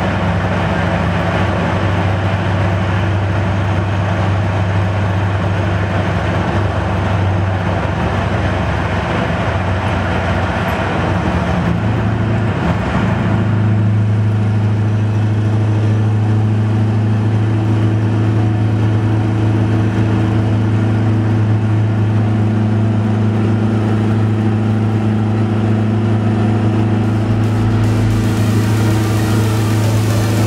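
Scania 4-series 580 V8 truck engine heard from inside the cab, pulling at steady revs on the motorway with tyre and road noise underneath. About halfway through, the engine hum becomes stronger and steadier.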